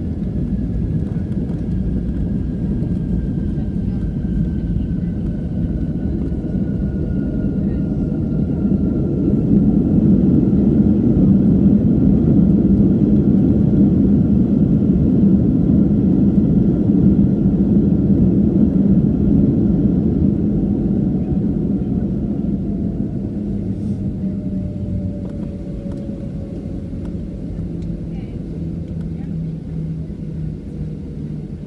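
Cabin sound of a WestJet Boeing 737 on its landing rollout: a steady engine rumble swells for several seconds as reverse thrust is applied, then dies away as the jet slows, with a faint whine falling slowly in pitch as the engines spool down.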